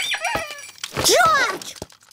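Short wordless cartoon piglet vocal sounds that slide up and down in pitch, mixed with a few light knocks of toys being tipped onto the floor.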